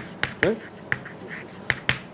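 Chalk writing on a chalkboard: a string of sharp taps and short scratches as the chalk strikes and drags across the board while letters are written.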